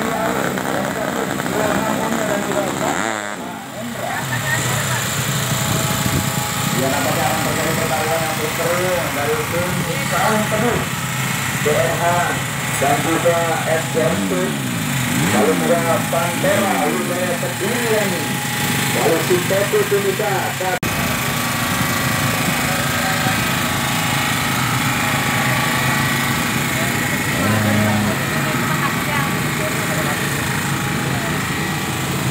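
Voices talking over the steady background noise of a motorcycle drag-race pit, with an engine revving up and down several times around the middle.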